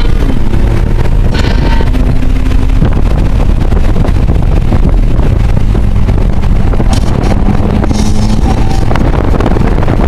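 2000 Toyota Solara driven hard around a race track, heard from inside the cabin: a steady loud engine and road rumble, with wind noise on the microphone.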